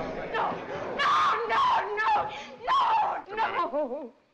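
A woman's loud, high-pitched cries, breaking into quick gasping sobs near the end.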